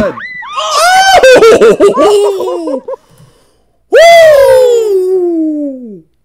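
High-pitched laughing and shrieking from people sledding. After a short silence comes one long, loud scream that slides steadily down in pitch.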